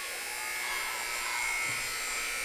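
Basketball scoreboard horn sounding as the game clock hits zero, one steady buzzing tone that signals the end of the game.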